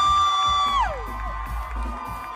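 A high voice holds one long note, the loudest sound, over the band, then slides down in pitch and fades about a second in. Crowd cheering and whoops follow as the song ends.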